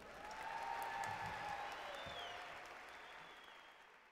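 Faint applause from a large audience, swelling about a second in and then fading away.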